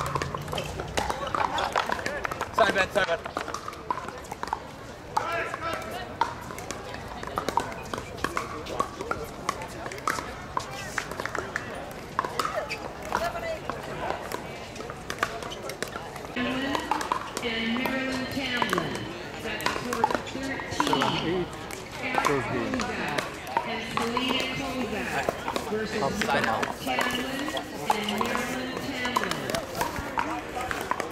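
Plastic pickleball balls being struck by paddles on several outdoor courts, sharp pops coming irregularly over a background of voices.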